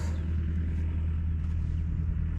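A construction machine's diesel engine idling steadily, a low even drone.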